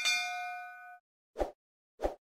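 Notification-bell 'ding' sound effect: a bright struck-bell tone that rings and fades over about a second, followed by two short pops.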